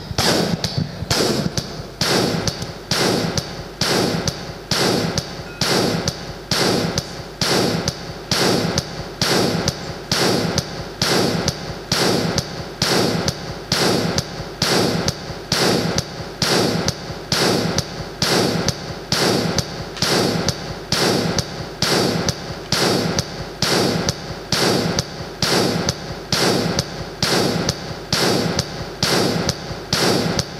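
Live amplified harmonica and electric guitar music driven by a hard, even pulse of about three beats every two seconds, each beat a sharp attack that fades before the next.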